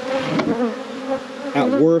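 Honey bees buzzing in a steady hum over the open top of a strong colony's hive, with bees on the top bars and in the air around it.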